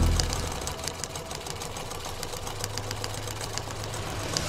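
Sewing machine stitching sound, a rapid even clicking over a low hum, as the background music cuts away at the start.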